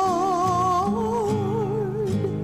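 A church hymn: one voice holds long notes with a wide vibrato, moving up a step about a second in, over strummed acoustic guitar chords.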